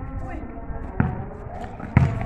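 A basketball bouncing hard on a paved court: two sharp thuds, one about a second in and a louder one near the end.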